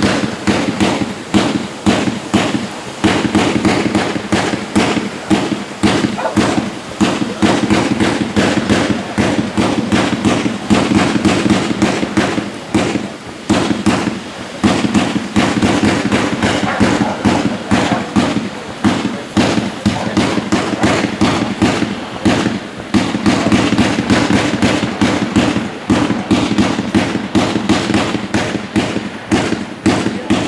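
Fireworks display: a dense, unbroken barrage of bangs and crackles from aerial shells, several reports a second.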